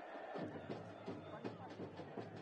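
Faint field-level ambience of a football match: scattered distant voices of players and a sparse crowd over a steady low hum.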